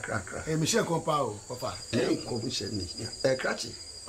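Crickets chirping in a steady high trill, with a man talking over them.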